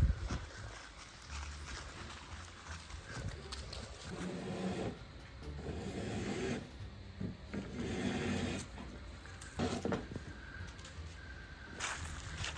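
Rubbing and scraping noise from a phone being handled and carried while it films, with a sharp thump right at the start.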